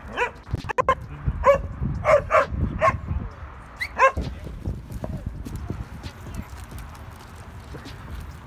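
Dogs barking during play, a run of about seven short barks over the first four seconds, then only a low rumbling background.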